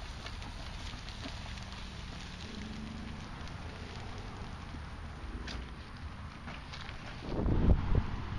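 Wind buffeting the microphone, a low steady rumble with a louder gust about seven seconds in.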